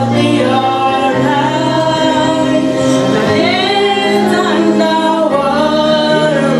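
A young woman singing a gospel song over instrumental accompaniment, her voice gliding through the melody above long held bass notes.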